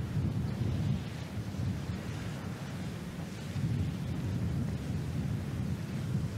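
Steady low rumble of wind buffeting an outdoor microphone, with no distinct strikes.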